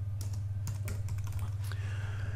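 Typing on a computer keyboard: a quick, irregular run of keystrokes as a word is entered, over a steady low hum.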